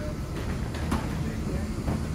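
Steady low rumble inside an airport jet bridge at the aircraft door, with a few sharp knocks of footsteps on the bridge floor about half a second, one second and two seconds in. Faint voices in the background.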